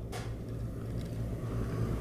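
Steady low hum of background room noise, with a faint click just at the start.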